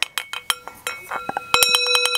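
Metal singing bowl clinked with a wooden striker: a few scattered taps for the first second and a half, then a fast clatter of the stick against the inside of the bowl. The bowl rings with several steady overtones.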